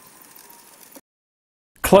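BENEXMART smart roller-blind motor on a chained blind, running faintly with a thin steady whine as it raises the blind and cutting off about a second in, as the blind reaches the top. A man's voice starts near the end.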